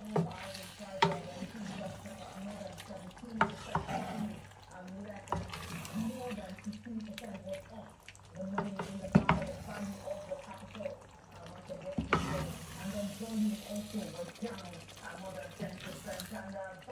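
Wooden spatula stirring thick, oily egusi soup in an aluminium pot: wet squelching and sloshing of the stew, with several sharp knocks of the spoon against the pot. A low, indistinct voice runs underneath.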